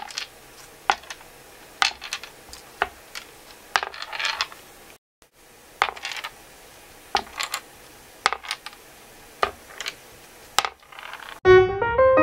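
Steel balls rolling on a tilted pegboard and clicking sharply against the black obstacles of a maze, about once a second, with a short rattling roll about four seconds in. Piano music begins near the end.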